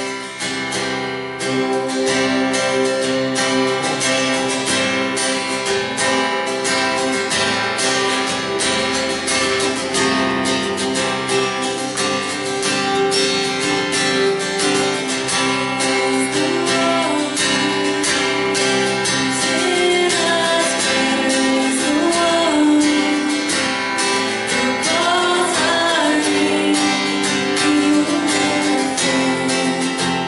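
Live worship song played on a strummed acoustic guitar and an electric bass guitar, with singing.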